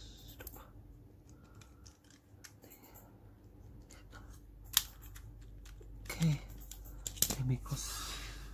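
Small plastic parts of a Mini 4WD chassis being handled and snapped together: faint rattling and light clicks, one sharp snap just under five seconds in as the black rear part is pressed on over the motor, then a few more clicks after seven seconds.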